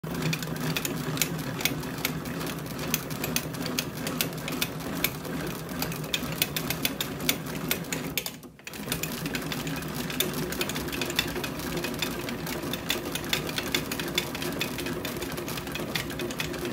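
Composite bat being rolled back and forth between the rollers of a hand-worked bat-rolling machine to break it in: a steady mechanical whir with many small clicks and crackles. It stops briefly about halfway through, then carries on.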